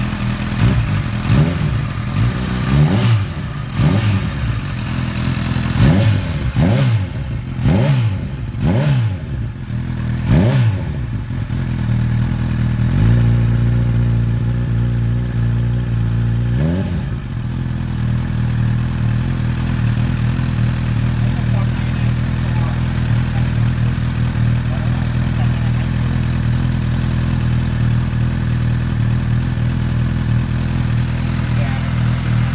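Honda CB1000R's inline-four engine heard through an Akrapovic slip-on exhaust. It is revved in a quick series of about eight throttle blips, held briefly at a steady raised speed, blipped once more, then left idling steadily.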